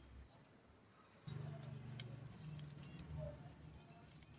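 Stiff folded paper crinkling and rustling as a cut paper snowflake is unfolded and pressed flat by hand, in scattered faint crackles. From about a second in, a low steady hum runs underneath.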